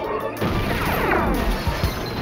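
Dramatic soundtrack music with a crash-like hit about half a second in, followed by a falling sweep effect.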